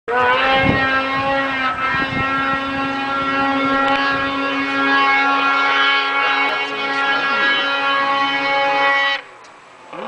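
Snowmobile engine held at high revs as the sled skims across open water, a steady high engine note that barely changes in pitch. The sound drops away sharply about nine seconds in.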